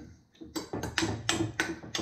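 A long utensil clinking and tapping against the inside of a glass jar while stirring and pressing strips of beef in marinade: a quick, uneven run of sharp taps starting about half a second in.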